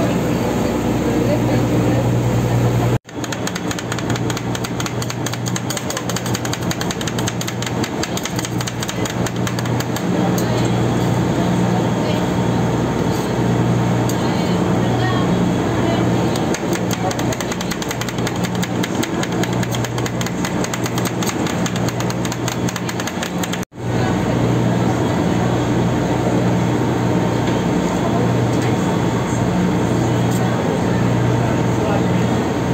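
A boat's engine runs with a steady low hum. Through the middle stretch, metal spatulas chop and scrape on a steel rolled-ice-cream cold plate in a quick, dense run of clicks and taps.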